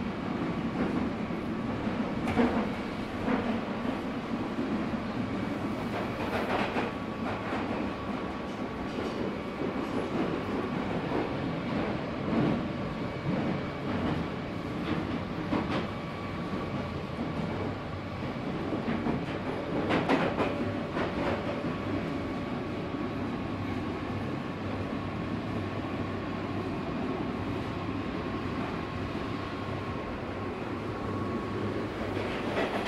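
A London Underground Northern Line tube train running through a tunnel, heard from inside the carriage. The wheels on the rails make a steady rumble, with scattered sharp clicks and knocks, the loudest about two seconds in and again about two-thirds of the way through, and a thin steady whine.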